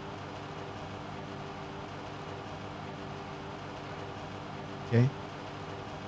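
Steady low background hum of room tone, even and unchanging, with faint steady tones in it.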